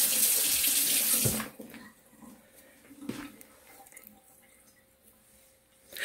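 Water running from a tap, turned off about a second and a half in, followed by a few faint small knocks.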